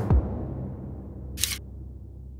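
Title-card sound-effect hit: a deep boom that fades slowly, with a short, bright swish about one and a half seconds in.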